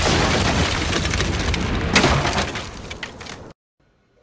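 Explosion sound effect, a loud noisy blast with crashing, breaking debris, and a second sharp crash about two seconds in. The noise dies down and cuts off suddenly shortly before the end.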